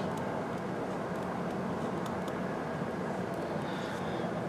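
Steady low background hiss and hum of a room, with a few faint light scratches of a pen on paper.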